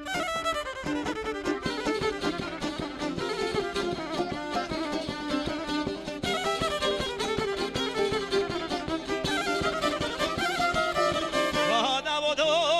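Instrumental interlude of Bosnian izvorna folk music: a violin plays the melody over fast, steady strumming of šargija long-necked lutes.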